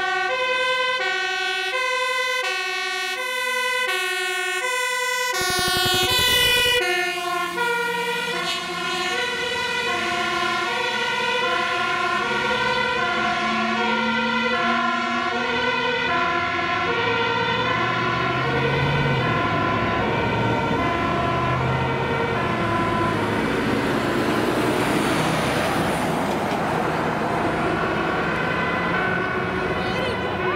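Fire engine's two-tone siren alternating steadily between a high and a low pitch as the truck approaches. About six seconds in it passes close with a brief loud rush, then the siren drops slightly in pitch as it drives away, with the truck's diesel engine heard under it.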